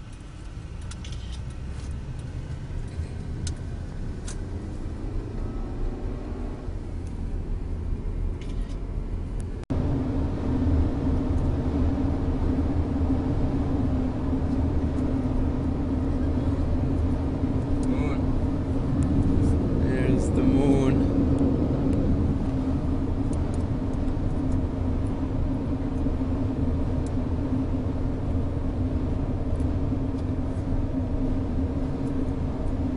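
Car cruising on an open highway, heard from inside the cabin: a steady low rumble of engine and tyre noise with a constant hum. It becomes louder after a brief dropout about ten seconds in.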